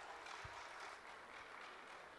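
Near silence in a pause in speech: faint room noise in a hall slowly fading, with one soft low thump about half a second in.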